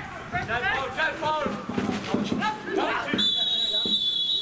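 Referee's whistle blown for a foul, one long steady blast starting about three seconds in, after voices calling out on the pitch.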